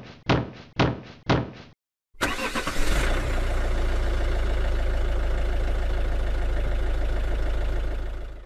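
A few sharp hits about half a second apart, each fading quickly, then about two seconds in a vehicle engine starts and settles into a steady idle.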